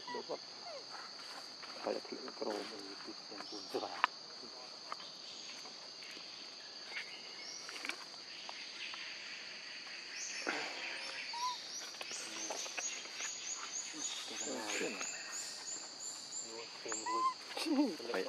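Steady high-pitched drone of forest insects, joined from about ten seconds in by a fast run of short repeated chirps. Brief voice-like calls come and go over it, strongest near the end.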